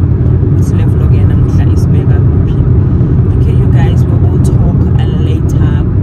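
Steady low rumble of a car driving, heard inside the cabin: road and engine noise, with faint short sounds scattered over it.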